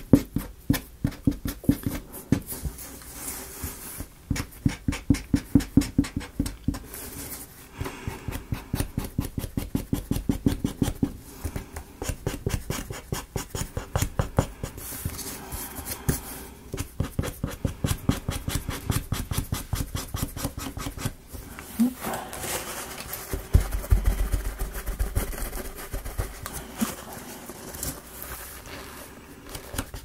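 Quick, even back-and-forth rubbing strokes on a small wooden model part, about five a second, in runs broken by short pauses, with a low handling bump about two-thirds of the way through.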